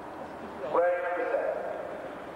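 A voice calls out once, a drawn-out vowel that jumps up in pitch and holds for about half a second, about three-quarters of a second in.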